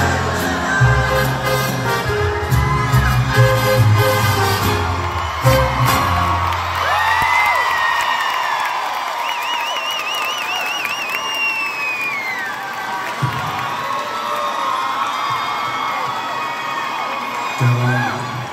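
A live mariachi band plays the final bars of a ranchera, full and bass-heavy, and stops about six seconds in. A large crowd then cheers, whistles and whoops, with a long high warbling cry partway through.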